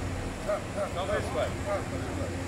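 Indistinct voices of people talking nearby, over a steady low hum.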